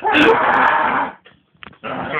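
A person making an animal-like cry about a second long, imitating a wild creature, then a few short clicks.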